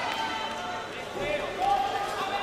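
Several voices shouting over one another in an arena during a kickboxing bout, with no clear words: coaches and spectators calling out to the fighters.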